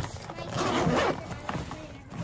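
Zipper on a motorcycle tail pack being pulled, a rasping run lasting most of a second.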